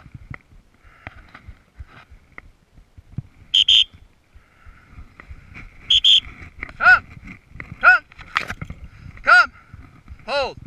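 Two short, shrill whistle blasts a couple of seconds apart, followed by three short shouted commands to a bird dog hunting for a downed quail. Rustling and steps through dry brush run underneath.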